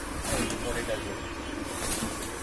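Indistinct voices in the background over a steady low rumble.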